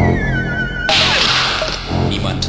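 Early-1990s techno from a DJ set: a high synth tone slides down in pitch over a steady bass pulse, then about a second in a sudden loud hiss of noise sweeps in and fades away.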